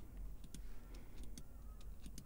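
Faint, scattered clicks of a computer mouse and keyboard, several light ticks over a steady low room hum.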